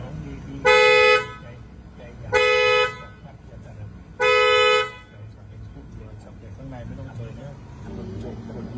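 Car horn sounded three times in short, steady blasts about a second and a half apart, pressed by a monk at the wheel as part of a new-car blessing.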